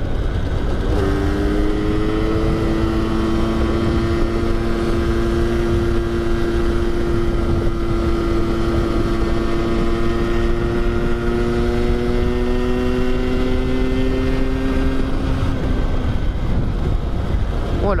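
Rieju MRT 50's two-stroke 50cc single-cylinder engine (Minarelli AM6), derestricted with its stock exhaust, running under steady cruise while riding, its note holding and slowly rising in pitch for most of the stretch before easing off near the end. Wind buffets the microphone underneath.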